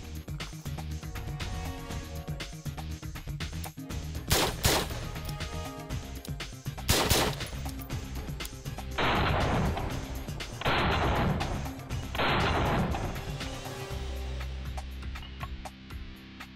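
Stag Arms Model 8T gas-piston AR-15 rifle being fired: two single sharp shots about two and a half seconds apart, then three strings of rapid shots of about a second each, over steady background music.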